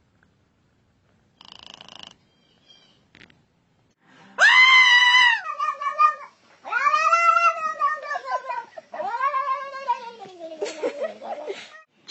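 Domestic cat yowling in long, drawn-out calls, about three from some four seconds in, each rising and sagging in pitch, then shorter broken yowls near the end. A short burst of noise comes about a second and a half in.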